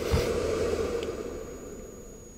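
Cooling fan of a Wanptek KPS305D switch-mode bench power supply blowing steadily, then winding down and fading away near the end as it shuts off. The fan came on only after close to an hour of heavy output at about 140 W.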